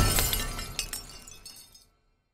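Logo-sting shatter sound effect: the tail of a crash, with glass-like debris tinkling and settling, fading away to silence near the end.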